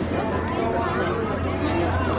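Background chatter of people talking nearby, soft and indistinct, over a steady low hum.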